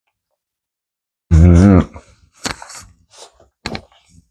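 A man's loud, low hummed groan lasting about half a second, made through a mouthful of bubble gum. A few short lip and mouth noises follow.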